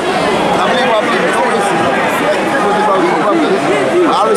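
Arena crowd at a boxing match: many voices talking and shouting over one another in a steady babble.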